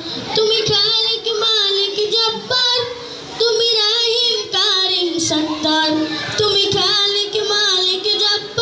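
A boy singing a Bengali Islamic devotional song solo into a microphone, in long phrases with wavering, ornamented held notes.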